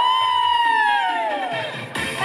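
A high-pitched voice holding one long note that rises at first, then slowly sinks and fades over nearly two seconds.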